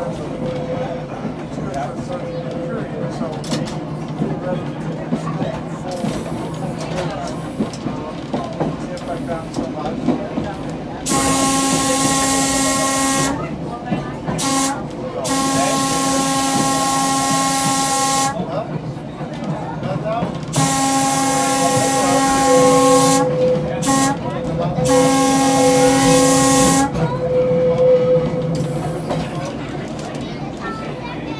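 A 1926 Brill interurban trolley running over the rails with a steady rumble and clatter. From about eleven seconds in, its air whistle sounds in two groups of long and short blasts as the car nears a grade crossing.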